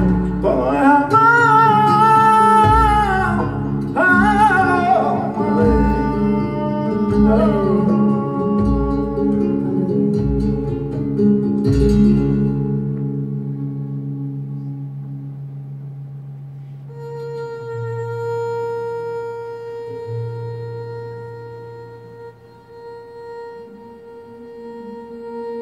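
Live flamenco music: a singer's voice over guitars, sustained low notes and deep regular beats, dying away about halfway through. Then a steady ringing tone with many overtones is held to the end.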